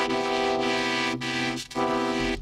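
Fully wet vocoded vocal from FL Studio's Vocodex: a sung line played through sustained synth chords from Massive, with the original dry vocal no longer audible. It holds one steady chord, briefly broken twice near the end.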